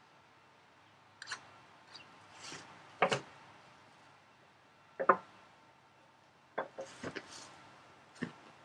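Sharp knocks and short scrapes of hand tools being handled on a wooden board, one every second or two, the loudest about three seconds in, with a quick cluster of knocks near the end.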